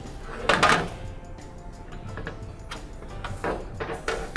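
Thin hammered-aluminium reflector panels rattling and flexing as they are handled and laid down on a table. The loudest rattle comes about half a second in, followed by smaller clatters, over soft background music.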